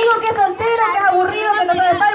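Several people talking and calling out over one another at once.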